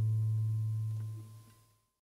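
Guitar's final low note ringing out and slowly dying away, then fading to silence about a second and a half in.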